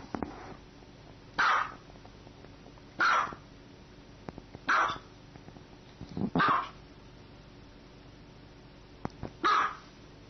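Small white dog barking: five single barks, about one and a half seconds apart, with a longer pause before the last.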